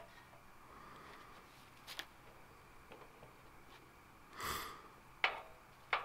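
Mostly quiet room tone, broken by a short breathy sniff through the nose a little past the middle and a couple of faint clicks.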